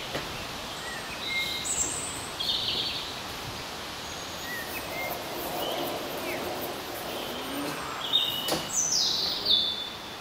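Garden birds chirping over steady outdoor background noise, with a cluster of quick falling notes near the end. A single sharp knock sounds about eight and a half seconds in.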